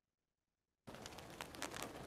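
Sound cuts in suddenly about a second in: a faint hiss with a fine crackle of clicks, the audio of a honey bee colony recording being played back.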